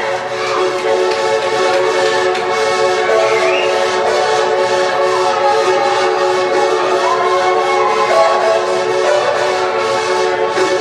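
Psychedelic band playing live: a loud, steady droning chord held throughout, with gliding lead notes weaving over it and a light, even beat underneath.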